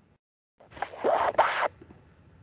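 A short, loud rasping rustle close to the microphone, in two strokes lasting about a second, starting about half a second in after a moment of dead silence.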